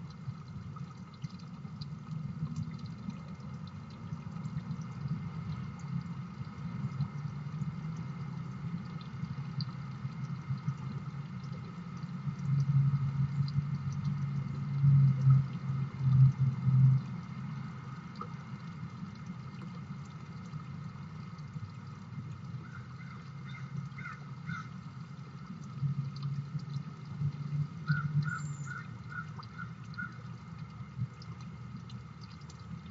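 Outdoor ambience at a backyard bird feeder: a steady low rumble that swells twice, the loudest thing heard, with two short runs of bird calls, four or five quick notes each, near the end.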